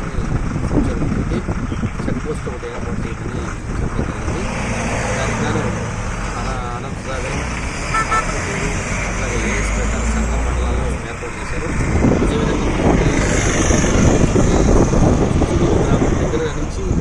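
Highway traffic passing with a low rumble, strongest through the middle, under a man talking in Telugu.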